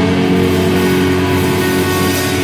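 Live punk rock band playing loud, with electric guitars holding sustained, ringing chords.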